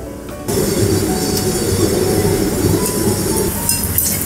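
Tapioca slices deep-frying in a small saucepan of hot oil: a steady sizzle that starts suddenly about half a second in, over background music.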